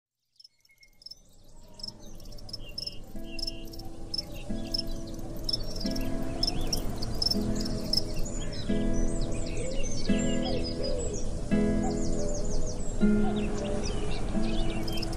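Birds chirping, fading in from silence over the first two seconds, joined about three seconds in by guitar music playing a new chord roughly every second and a half.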